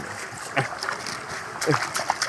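Water rushing and splashing through a blue mesh net trap set at a pipe outlet, as the net is handled in the flow.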